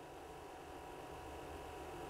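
Quiet room tone: a faint, steady low hum and hiss.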